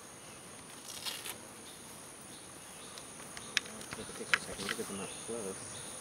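Steady high-pitched chorus of insects, with a brief buzz about a second in and a couple of sharp ticks in the middle; faint voices near the end.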